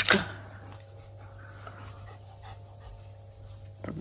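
A dog panting faintly over a low steady hum.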